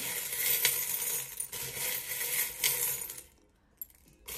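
A heap of small metal charms clinking and jingling against each other and a ceramic bowl as hands stir through them; the clatter stops about three seconds in, leaving a single small tick near the end.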